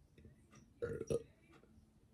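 A person burping once, short, about a second in.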